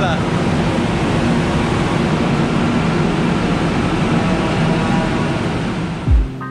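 Steady noise of a Manila MRT train and the elevated station platform around it, a continuous rumble and hiss with faint tones coming and going.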